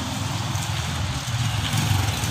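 A motor-vehicle engine running nearby with a steady low throb, growing a little louder near the end.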